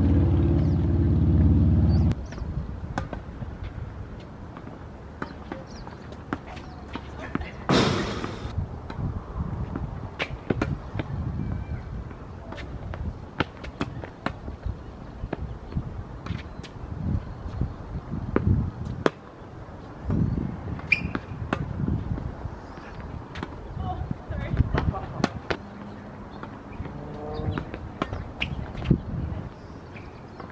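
Tennis being played on a hard court: irregular sharp pops of a racket striking the ball and the ball bouncing, over a low outdoor rumble. A loud low steady hum fills the first two seconds and cuts off suddenly.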